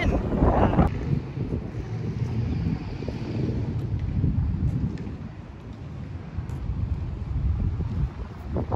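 Wind buffeting the microphone: an uneven low rumble that eases off a little past the middle.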